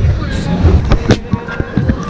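Busy restaurant din: background voices and music, with a few sharp knocks about a second in.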